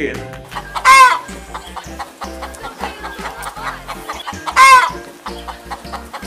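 A chicken clucking and squawking, with two loud squawks, one about a second in and one near the end, and softer clucks between, over background music.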